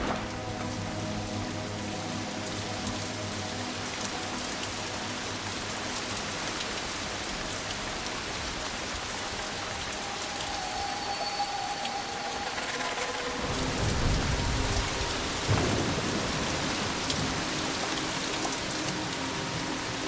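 Steady rain falling, with a low roll of thunder about two-thirds of the way through.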